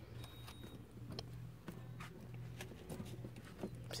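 Quiet shop room tone: a steady low hum with a few scattered light taps and clicks at irregular intervals.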